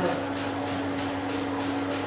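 Steady electrical hum of a running electric annealing furnace, holding one even tone.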